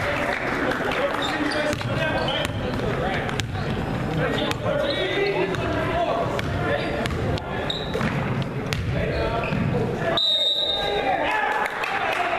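A basketball bouncing on a hardwood gym floor during play, among indistinct voices echoing in a large gym. About ten seconds in, a referee's whistle blows once, briefly.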